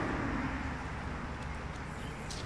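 Exhaust of a 2005 Jeep Grand Cherokee idling steadily, heard from behind at the tailpipe as a low rumble. The engine has a reported misfire, which the mechanic puts down to antifreeze getting into the combustion chamber through a head gasket or intake gasket leak.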